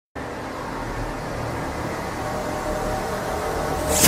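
Intro of a death-metal backing track: a low, noisy rumble that slowly swells louder, building toward the full band's entry right at the end.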